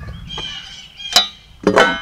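One sharp metallic clink with a short ring about a second in: the steel framing square knocking against the log as it is set in place.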